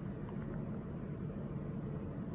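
Steady low hum of background room noise, with no distinct events.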